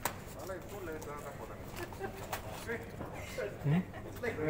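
Faint background voices of people talking, with a few light clicks and knocks. A short, louder voice comes in near the end.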